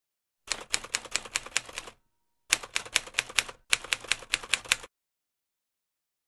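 Typewriter sound effect: three quick runs of keystroke clicks, about five a second, with short pauses between them and a faint steady tone in the first pause.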